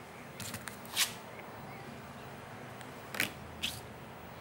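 Tarot cards being drawn and laid on a table: a few faint, short rustles and taps, the clearest about a second in and again after three seconds.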